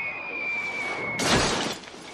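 A falling object's high whistle, dropping slightly in pitch, ends about a second in with a loud crash and shattering glass: a stage light falling from the sky and smashing on the street.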